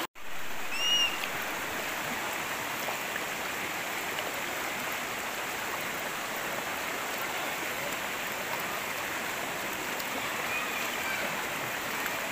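Shallow river water rushing steadily over rocks and boulders: a constant, even rush of flowing water.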